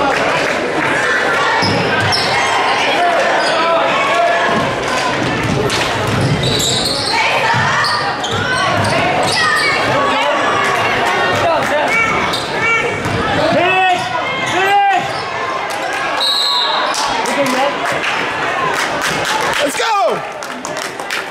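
A basketball dribbled and bouncing on a hardwood gym floor during live play, with sneakers squeaking and spectators and players shouting, all echoing in the gym. A few sharp sneaker squeals come about two-thirds of the way in.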